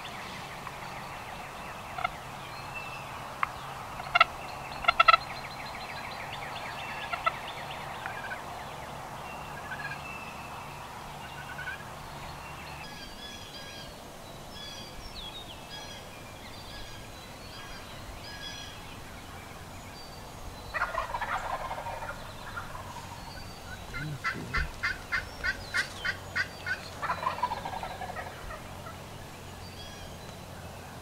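Wild turkey gobbler gobbling, twice in the last third, with a run of about eight evenly spaced hen yelps between the gobbles. A few sharp clicks in the first several seconds and faint songbird chirps behind.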